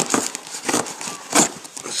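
Hands gripping and turning a dented cardboard mailing box: a string of irregular crackles and scuffs of cardboard, the loudest about one and a half seconds in.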